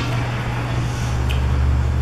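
Steady low hum with faint room noise, the lowest part of the hum growing stronger in the second half; a tiny tick about a second in.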